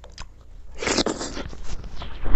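Close-miked eating sounds of soft milk rice pudding (kheer) eaten by hand: wet chewing and mouth clicks, with a louder noisy burst about a second in.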